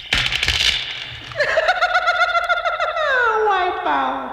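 Laughter, then a long high-pitched, wavering voice held for a moment and then sliding steadily down in pitch.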